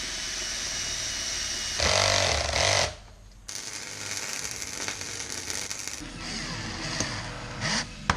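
Cordless drill-driver running in bursts as it drives screws through a thin metal plate into a wooden block. It is loudest for about a second from two seconds in, stops briefly, then runs again.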